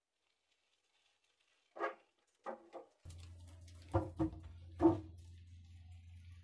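BMX bike knocking and thumping on a wooden kicker ramp and concrete: a few short knocks about two seconds in, then three sharper impacts around four to five seconds in, the last the loudest, over a low steady hum.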